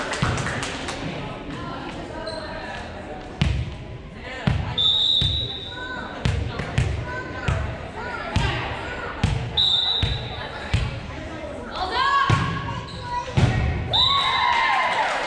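A ball bouncing again and again on a hardwood gym floor, about one thud every two-thirds of a second, in a large echoing gym. Two short whistle blasts come about a third and two-thirds of the way through, and players shout over it.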